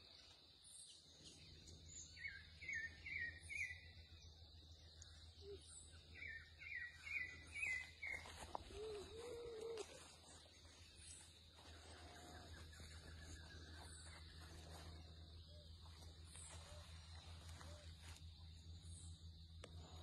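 Faint outdoor birdsong: two runs of four or five quick falling chirps, with thin high chirps scattered throughout and a few low calls about nine seconds in, over a steady low hum.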